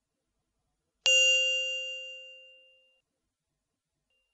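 A single bell-like chime, struck once about a second in and ringing out, fading away over about two seconds.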